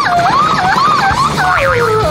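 A loud, warbling, siren-like wail that rises and falls about two to three times a second, then slides down in pitch near the end, over a low rumble.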